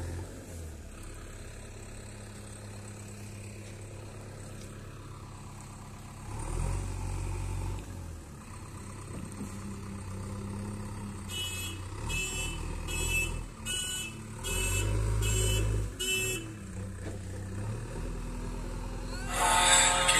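JCB 3DX backhoe loader's diesel engine running steadily, rising twice as the machine works the soil. In the middle a reversing alarm sounds about eight high beeps in a row. Loud music comes in just at the end.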